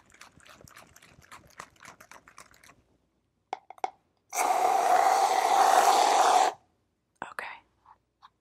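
Aerosol shaving cream can dispensing foam in a steady hiss of about two seconds that starts and stops sharply, a little over halfway through. Before it come faint, irregular crackling clicks of the can being handled, and a few more clicks follow near the end.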